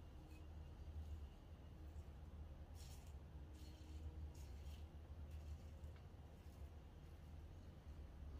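Faint scratching of a Razorock Hawk v.2 single-edge razor with a Feather Artist Club blade cutting lathered neck stubble, about six short strokes from about three seconds in, over a low steady hum.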